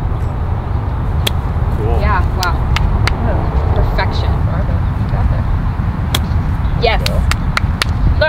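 Steady low rumble of wind buffeting the microphone on an open driving range, with faint voices and several sharp clicks scattered through it.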